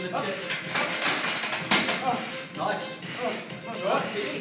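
220 kg loaded barbell clanking as it is set back in the rack, loudest in one sharp metal clank a little under two seconds in, over indistinct voices and background music.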